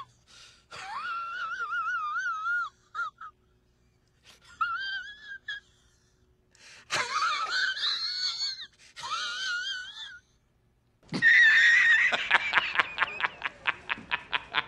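Several high-pitched, wavering wheezing vocal sounds in separate bursts, then a loud burst of rapid laughter starting about eleven seconds in.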